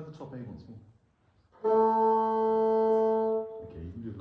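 Bassoon sounding a single steady held note for about two seconds, rich in overtones, after a few spoken words.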